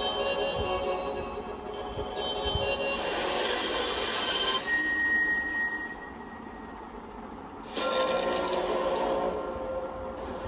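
Music from a K-pop music video's opening playing through the speakers: sustained, layered tones that drop to a quieter passage with a single high held note about five seconds in, then swell back up close to eight seconds in.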